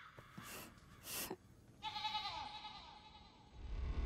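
Two short breathy sounds, then a brief wavering high-pitched vocal sound lasting about a second; a low hum comes in near the end.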